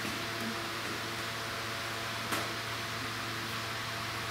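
Steady room tone: an even hiss with a low steady hum, broken once by a faint click a little over two seconds in.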